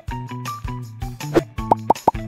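Upbeat background music with a steady beat. Near the end, a quick run of three or four short popping blips plays as a screen-transition sound effect.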